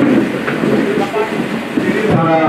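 Several people talking at once, a jumble of overlapping voices in a hall with no single clear speaker.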